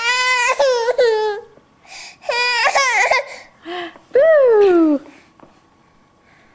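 A one-year-old girl crying in three wailing bursts. The last is the loudest and falls in pitch, and then the crying stops.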